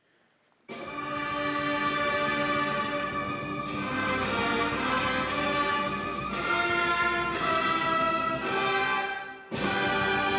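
Military brass band playing slow, held ceremonial chords, coming in about a second in after near silence. The music drops away briefly near the end and then comes straight back.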